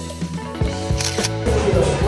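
Background music with a steady bass line, overlaid about a second in by a camera-shutter sound effect of two quick clicks.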